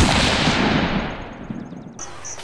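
Edited sound effect: a single sudden blast with a long noisy tail that fades away over about two seconds, the high end dying first, with faint rapid ticking near the end.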